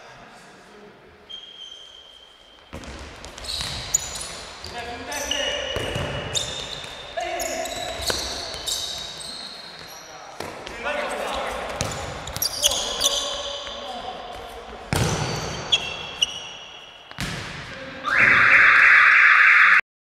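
Indoor futsal play on a hard sports-hall floor: the ball being kicked and thudding on the court, shoes squeaking, and players calling out, all echoing in the hall. Near the end a loud, harsh buzzer sounds for about two seconds.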